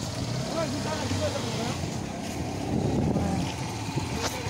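A vehicle's engine runs steadily with road and wind noise as it moves along.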